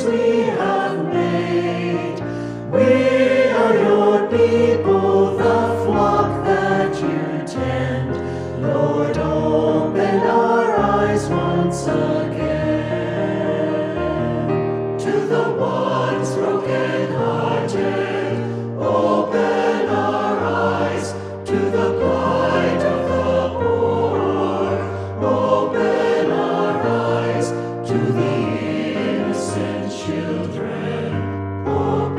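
Virtual choir of mixed men's and women's voices singing a hymn in several parts, with lines such as "from the chains we have made" and "to the ones brokenhearted".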